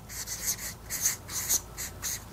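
A felt-tip marker writing letters on a flip-chart pad of paper: a quick series of short, scratchy strokes.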